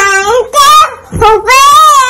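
A toddler's high voice singing: a few short notes, then a long held note about a second and a half in that rises and falls in pitch.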